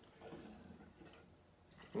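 Methyl hydrate poured from a plastic jug through a funnel into a glass bottle of shellac flakes: a faint trickle of liquid that fades away after about a second.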